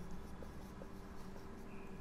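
Faint strokes of a marker pen writing on a whiteboard, with a couple of light ticks in the first second.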